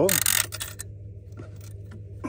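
A brief rustling noise in the first second, then a steady low hum with a couple of faint clicks.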